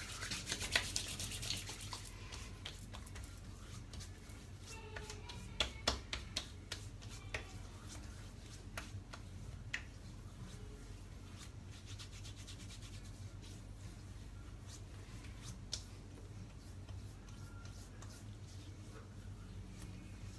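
Hands rubbing aftershave balm into freshly shaved skin of the face and neck, a soft skin-on-skin rubbing. It is brightest over the first couple of seconds, then quieter, with scattered light clicks and pats.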